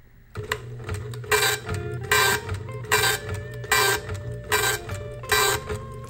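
Southwest Technical Products PR-40 dot-matrix impact printer printing its character set over and over. It starts about a third of a second in, with a clattering burst of print-head strikes roughly every 0.8 s over a steady motor hum.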